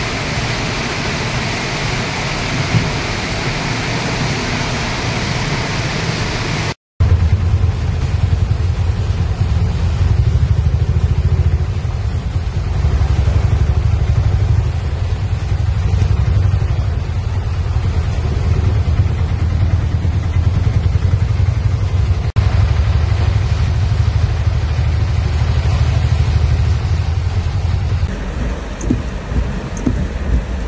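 Heavy rain and traffic wading through floodwater, an even hiss. After a sudden cut about seven seconds in, the low rumble of a car driving through the flooded road in rain, heard from inside its cabin, with a few sharp taps of raindrops on the car near the end.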